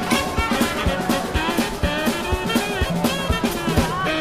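Street band playing live: an upright double bass with other instruments over a steady beat of several strokes a second.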